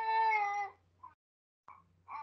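One drawn-out, high-pitched call lasting under a second and dropping slightly in pitch at its end, heard over a conference call's audio with a faint steady hum beneath it.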